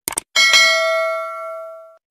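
Sound effect of two quick clicks followed by a single bright bell ding that rings and fades over about a second and a half. It is a subscribe animation's notification-bell chime.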